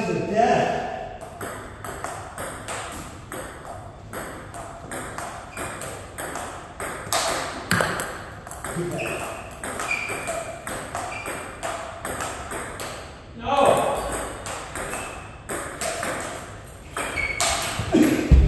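Table tennis rally: a ping-pong ball clicking repeatedly off the paddles and the table, with voices in the room at times.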